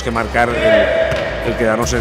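Basketball being dribbled on a gym floor, a few short bounces under a man's speaking voice.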